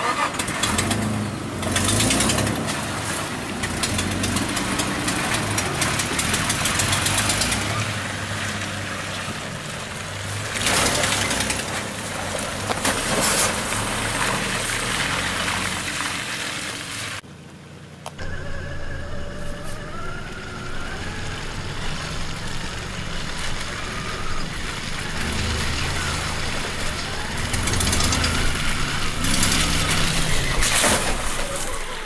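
Off-road SUV engine running and revving as it tries to pull out of mud, with wind buffeting the microphone. The sound drops out briefly about halfway through and comes back.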